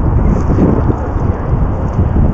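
Wind buffeting the camera microphone: a steady, loud low rumble with no voices over it.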